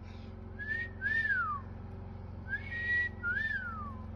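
Someone whistling a two-note phrase twice: a short rising note, then a longer note that rises and slides down.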